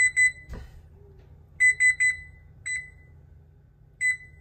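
Electronic oven control panel beeping as its buttons are pressed to set convection baking: short beeps all at one pitch, in a quick group of three, another three about a second and a half later, then single beeps. A soft knock about half a second in.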